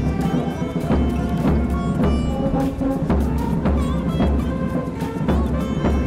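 Military band playing a march: brass holding steady notes over a bass drum beating about every two-thirds of a second.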